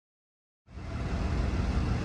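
Silence, then under a second in a low, steady vehicle rumble starts abruptly and builds a little.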